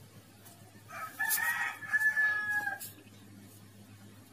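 A rooster crowing once, starting about a second in and lasting nearly two seconds.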